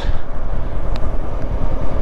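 Honda CB500X motorcycle ridden at low city speed, heard from the rider's seat: a steady rumble of the engine and road noise.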